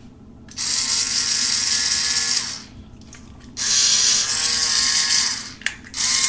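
Electric salt and pepper grinder's small motor and gear train whirring in two runs of about two seconds each, with a short pause between them and a steady pitch throughout. The motor still runs strongly: 'pretty powerful'.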